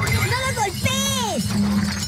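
A glass vase full of water beads shattering under a car tyre, the beads scattering. Over it a voice gives two long rising-and-falling cries, with background music.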